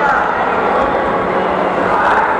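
A crowd of spectators' voices: a steady, loud mix of chatter and shouting with no single voice standing out.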